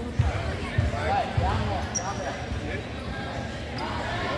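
A basketball bouncing on a hardwood gym floor: three dribbles about half a second apart in the first half, with voices carrying in the big room.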